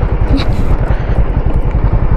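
Motorcycle riding downhill, its engine and the ride making a steady low rumble.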